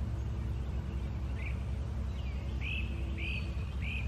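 A bird calling: a short chirp about a second and a half in, then a run of repeated chirps about two-thirds of a second apart through the second half, over a steady low outdoor rumble.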